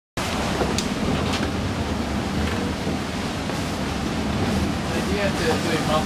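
Steady rush of wind and rough sea heard from inside a sailing yacht's pilothouse in strong winds, with a few brief sharp sounds in the first few seconds.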